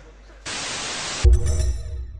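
Editing transition sound effect: a burst of TV-style static lasting under a second, then a deep boom with a faint ringing tone that dies away.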